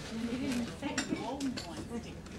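Cutlery and dishes clinking, with a few sharp clinks around a second in, over low murmured voices.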